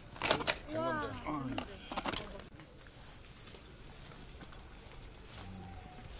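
Mountain bike on a granite rock ledge: a sharp knock just after the start and another, smaller click about two seconds in. A person gives a brief wordless call just after the first knock.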